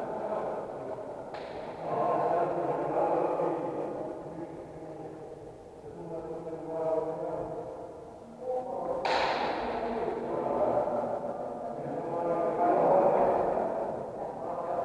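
Indistinct voices of several people talking in a large, echoing gym hall, with a sharp thump about nine seconds in.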